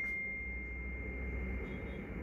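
A single steady high-pitched pure tone, like an electronic beep, held for about two seconds after a click-like onset. A faint low hum lies under it.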